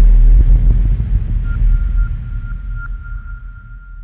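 Logo sting sound effect: a deep bass boom that slowly fades out, joined about a second and a half in by a thin, high ringing tone with a few soft pings.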